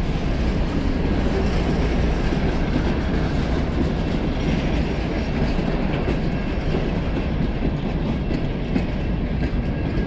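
Freight train cars rolling past close by: a steady, loud rumble of steel wheels on the rails.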